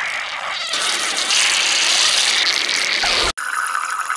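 Cartoon diarrhea sound effect: a long, steady, wet hiss that cuts off suddenly a little over three seconds in. A different hiss with a faint steady tone follows.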